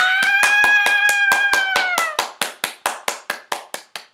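A woman clapping her hands quickly, about five or six claps a second, with a high held squeal from her over the first two seconds; the claps carry on alone and thin out near the end.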